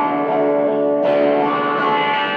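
Electric guitar played through an amplifier and effects pedals, sustained notes ringing, with a new chord struck about a second in.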